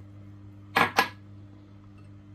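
Two sharp clinks about a quarter of a second apart, kitchenware knocking against the salad bowl as the diced vegetables go in, over a faint steady low hum.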